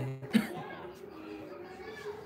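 A man's single short cough about a third of a second in, followed by quiet room tone.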